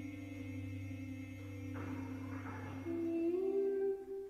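Contemporary music for a vocal ensemble and bass clarinet: several voices hold steady hummed tones over a low drone. In the middle comes about a second of breathy rushing noise, and near the end a new, louder held note enters and slides slightly upward.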